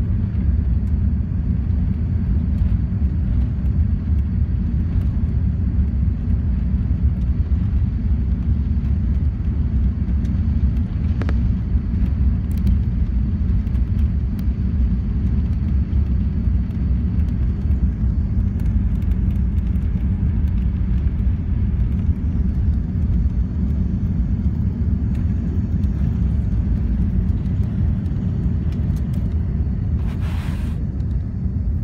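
Steady low rumble inside the cabin of an Airbus A380 taxiing: engines at low thrust and the airframe and wheels rolling along the taxiway, heard through the fuselage.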